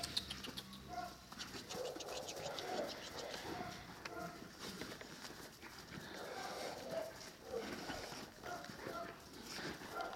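Two large mastiff-type dogs playing tug-of-war with a rope toy in snow, with low growls and scuffling throughout.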